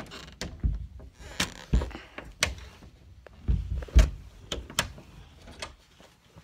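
A door being pushed shut again and again, knocking and thumping in its frame without latching: it won't shut because something, a hanger, is caught in it. About eight knocks, the loudest about four seconds in, with rustling in between.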